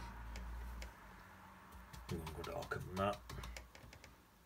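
A bristle paintbrush dabbing on watercolour paper in light, irregular taps, with a short wordless murmur from a man's voice about two seconds in.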